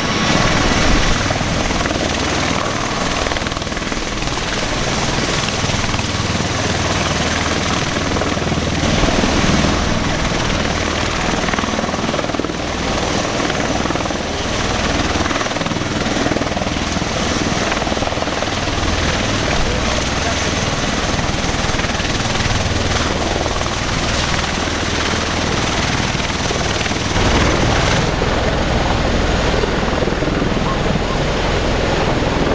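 Military helicopters' rotors and turbine engines running loud and steady.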